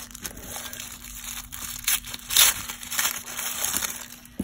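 Tissue paper being unwrapped and crumpled by hand: irregular crinkling rustles, loudest a little past the middle.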